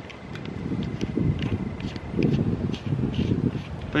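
Wind buffeting the microphone, a low rumble that swells and fades, with a few faint clicks of a flashlight being handled and pressed into its mount on a slingshot.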